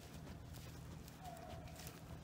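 Footsteps of a person walking briskly through dry fallen leaves and grass, a crunch every half second or so, with a low rumble of wind or handling underneath. A faint thin held tone sounds briefly about halfway through.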